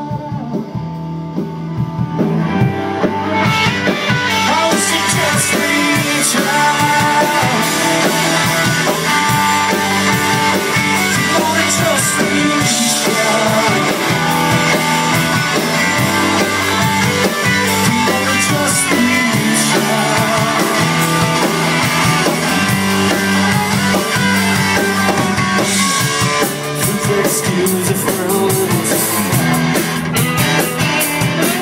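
A rock band playing live, with guitar and drum kit. It builds over the first few seconds into the full band, with a brief drop near the end.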